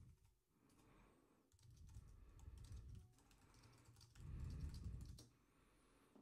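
Faint typing on a computer keyboard in irregular runs of keystrokes, with a low rumble in two stretches, the second near the end being the loudest.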